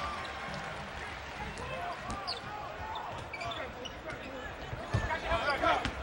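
Basketball arena game sound: a steady crowd murmur with faint voices, and a basketball bouncing on the hardwood court, with a few short thuds about five seconds in.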